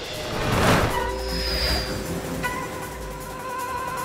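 Cartoon action soundtrack: music with long held notes over a low steady rumble, and a loud whoosh effect about half a second in.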